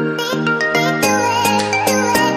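Background music: a light, bright tune of quick, evenly spaced notes over a sustained bass line that changes pitch about a second in.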